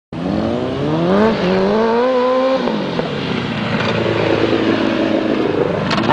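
Sport motorcycle engine accelerating: its pitch climbs, dips briefly once, climbs again until about two and a half seconds in, then falls away and holds a steady note. A sharp rev comes right at the end.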